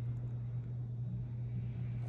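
A steady low hum at one pitch, unchanging, over faint background noise.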